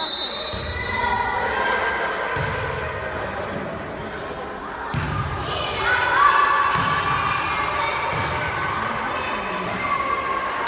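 Volleyball being served and hit back and forth in a sports hall: about six sharp hits of the ball, a second or two apart. Voices shout over the hits, loudest about six seconds in.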